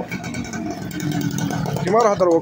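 Small motorcycle engine running as it rides past close by, a steady hum that rises slightly in pitch.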